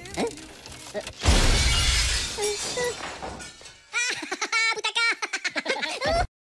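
Glass shattering about a second in, a loud crash that dies away over about two seconds. Near the end, a high-pitched cartoon voice chatters in quick repeated syllables.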